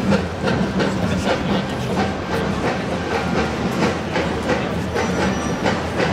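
Loud, steady outdoor din with frequent irregular sharp clicks and clacks.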